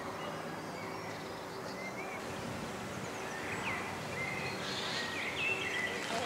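Outdoor ambience: a steady background hiss with a few short bird chirps, more of them in the second half.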